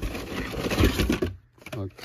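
Carded Hot Wheels cars in plastic blister packs rustling and clacking against each other as a gloved hand rummages through a cardboard box, a quick run of clicks that stops about a second and a half in.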